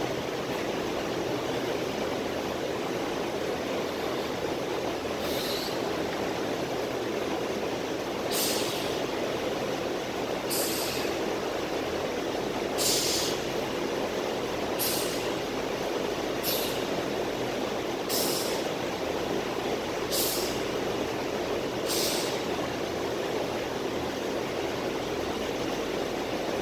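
Sharp hissing exhales, about one every two seconds and nine in all, from a man doing barbell back squats, one breath per rep. They sit over a steady rushing background noise.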